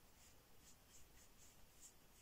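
Faint, soft strokes of a fine-pointed synthetic round brush laying acrylic paint onto paper, about six short brushings in quick succession.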